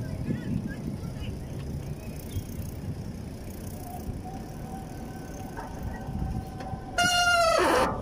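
Bicycle rolling over sidewalk paving with a steady low rumble, then a loud brake squeal near the end as the bike slows for a stop, its pitch falling before it cuts off.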